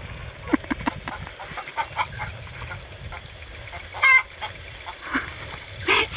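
A flock of backyard hens clucking as they feed, short scattered clucks with one louder call about four seconds in.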